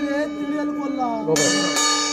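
Small hanging metal gong struck with a wooden stick: a sharp strike about a second and a half in and another shortly after, each leaving a long ring of several steady tones over the still-sounding ring of earlier strikes.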